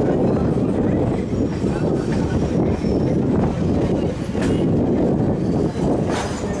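Sri Lanka Railways Class S8 diesel multiple unit pulling out of a station, heard from an open carriage door: a loud, steady rumble of engine and wheels, with a few sharp clicks over the rails as it gathers speed.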